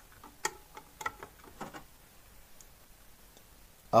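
Several small plastic clicks as a multi-pin high-level input plug is pushed and seated into its socket on a car amplifier's panel, bunched in the first two seconds.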